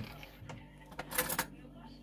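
A short cluster of clicks and crinkling rustles about a second in, from a silicone kitchen utensil handling baked turkey pieces in an opened roasting bag on a baking tray, with a few faint clicks before it.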